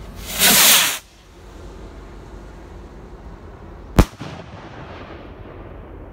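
Radioactive Rocket consumer firework rocket launching with a loud rushing whoosh lasting under a second, then about three seconds later a single sharp bang as it bursts overhead, trailing off in a brief rolling echo.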